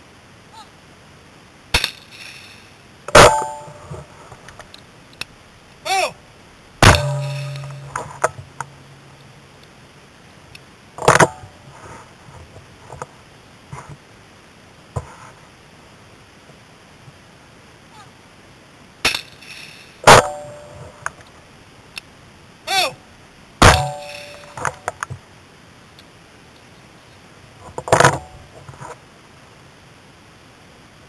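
Sharp metallic clanks and clicks from handling the Browning Silver 12-gauge shotgun that the camera is mounted on, several ringing briefly. They come in irregular pairs, a lighter click then a loud clang about a second later, with long pauses between.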